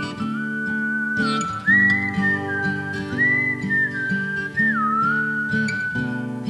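Instrumental country music: acoustic guitar chords under a pedal steel guitar lead that slides smoothly between long held notes, gliding up about a second and a half in and bending down near the end.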